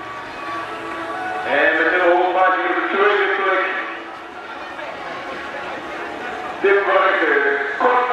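A voice speaking with music behind it, in two stretches with a quieter gap in the middle.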